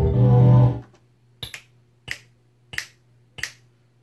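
Beat playback cuts off about a second in, then four snap hits play on their own, evenly spaced about two-thirds of a second apart, over a faint low hum.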